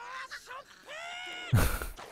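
Anime characters' shouting voices on the episode's soundtrack, ending in a long, high-held cry about a second in, followed by a sudden loud burst of noise with a heavy low end just after one and a half seconds.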